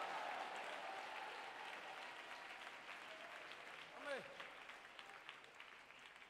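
Congregation applauding, the clapping slowly dying away, with one voice calling out briefly about four seconds in.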